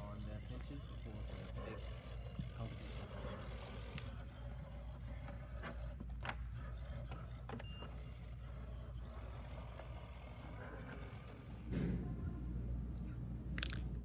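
Large-room background: a steady low hum and faint distant voices, with a few sharp clicks, getting louder near the end.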